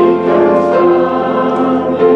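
Church hymn singing: voices hold notes that change every half second or so, over a piano accompaniment.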